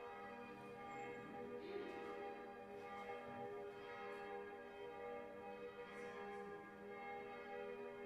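Church bells ringing, faint, their strokes blending into a continuous ring of sustained tones.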